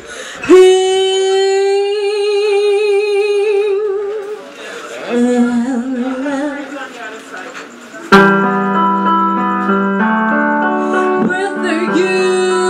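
A woman singing unaccompanied: a long held note with vibrato, then a shorter, lower phrase. About eight seconds in, a karaoke backing track of sustained chords comes in suddenly and loudly under her voice.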